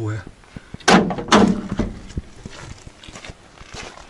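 Metal cab door of an old Soviet crane truck banging twice about a second in, followed by faint scattered clicks and shuffling as someone climbs out of the cab.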